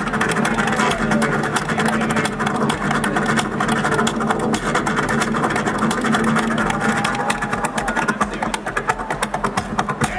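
Two acoustic guitars played fast and loud: rapid driving strumming with percussive strokes, under a held and sliding melody line.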